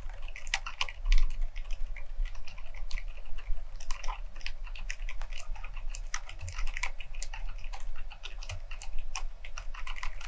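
Fast, continuous typing on an FL Esports CMK75 mechanical keyboard fitted with fully lubricated silent Lime switches: a dense run of quick keystrokes, extremely low-noise.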